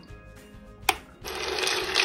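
The power switch of a cocoa bean roaster clicks once, about a second in. A moment later the roaster starts running, and its stirring paddle turns the cocoa beans in the pan with a steady, rising rattle.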